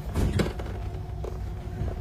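Bus passenger doors closing and latching with a short clunk about half a second in, over the low steady hum of the stopped vehicle.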